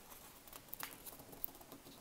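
Faint rustle of a square sheet of paper being folded up along its bottom edge by hand, with a few small ticks as the fingers handle it.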